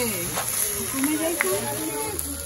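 People talking, with music playing underneath.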